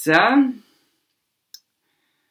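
A woman's voice trails off, then there is one short, light click about a second and a half in, amid otherwise silent, noise-gated audio.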